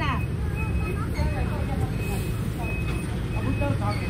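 Street ambience: a steady low traffic rumble, with people talking in the background now and then.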